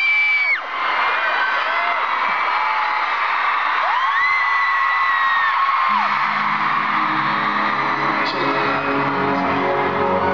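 Arena crowd of fans screaming and cheering continuously, with one long high scream standing out in the middle. About six seconds in, music comes in with low sustained chords under the screaming.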